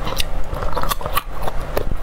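Close-miked chewing of a raw garlic clove: a run of short, crisp crunches and clicks.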